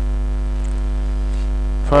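Steady electrical mains hum on the recording, a constant low drone with a buzz of evenly spaced overtones that does not change.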